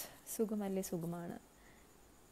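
A woman speaking a few words in the first second and a half, then quiet room tone.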